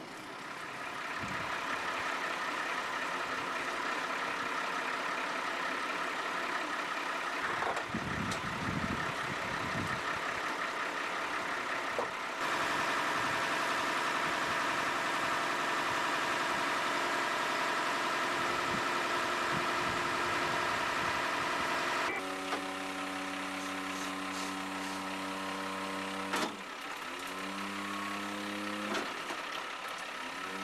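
Recovery truck engine running steadily, its note changing abruptly twice. Near the end its speed rises twice as it is revved, typical of the engine driving the wrecker's crane while it lifts an overturned van.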